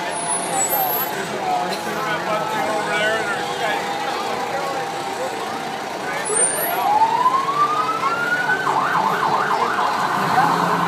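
Fire truck siren winding up in one rising wail about six seconds in, then switching to a fast yelp near the end, over crowd chatter.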